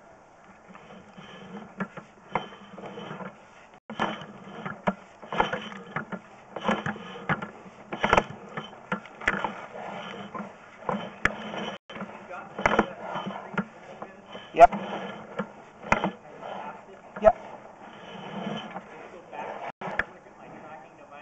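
Sewer inspection camera's push cable being pulled back out of the pipe and onto its reel, in repeated scraping bursts with sharp clicks about every second or so.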